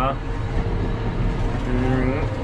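John Deere tractor engine running steadily under load, heard from inside the cab while driving through the field.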